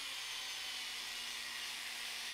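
Small variable-speed electric drill motor running steadily at low speed: an even hiss with a faint low hum.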